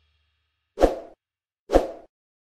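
Two short pop sound effects, a little under a second apart, from an animated intro graphic.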